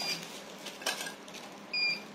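A short, steady high-pitched electronic beep near the end, with a single faint click about a second in, over low background noise.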